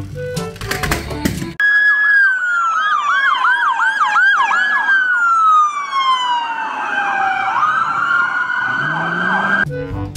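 Police car siren sounding, its pitch slowly falling in a long wail while a second, faster rise-and-fall yelp repeats over it, then climbing back up to a high held tone. It comes in sharply after a short stretch of music.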